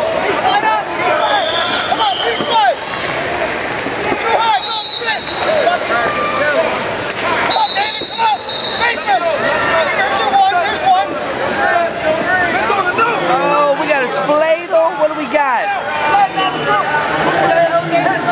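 Many voices from the arena crowd and matside calling out over one another during a youth wrestling bout, loud and continuous.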